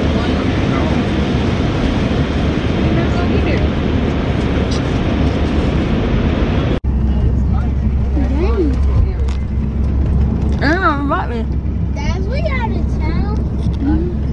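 Road and wind noise inside a moving car's cabin. After a sudden break about halfway through, a steady low engine rumble goes on under voices rising and falling.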